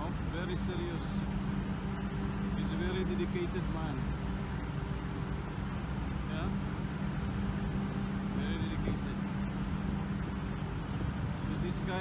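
Steady low drone of a ship underway at sea: a constant hum over a rumble of wind and sea. Faint voices come through briefly a few times.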